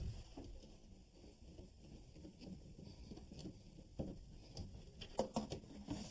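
Quiet handling noise with a few light clicks and knocks, bunched near the end, as a small wooden access panel in the wall is opened.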